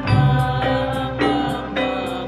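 Men singing a devotional chant in unison, accompanied by hand-struck frame drums beating a steady pulse about every 0.6 s.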